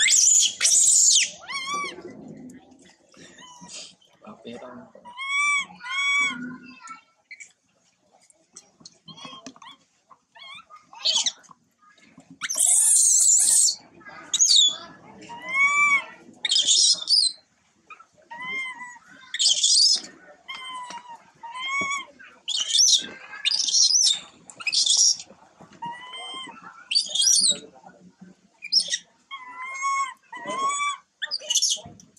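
Infant long-tailed macaque crying in distress: a run of short, high-pitched, arching calls, one every second or so, broken by louder harsh screams at intervals.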